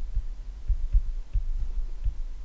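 Low, irregular thumps, several a second, from a stylus writing on a tablet.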